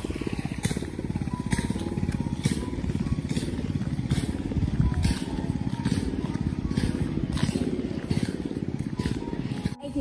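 Footsteps walking along a path, about one step a second, over a steady low rumble.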